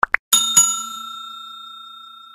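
Two quick click sound effects, then a bell ding struck twice in quick succession, its clear tones ringing on and slowly fading: the click-and-notification-bell sound effect of a subscribe-button animation.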